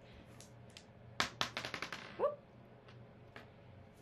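Two dice rolled onto a paper game board on a tabletop, clattering in a quick run of clicks about a second in that come closer together and fade as the dice settle.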